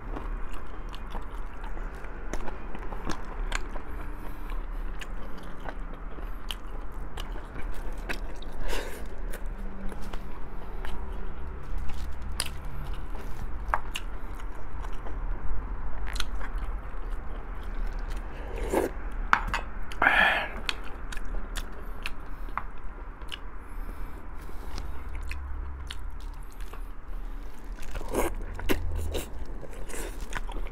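Close-miked chewing and biting as a man gnaws meat off pork rib bones, with many small wet clicks and smacks of the mouth. A brief breathy hiss comes about two-thirds of the way through.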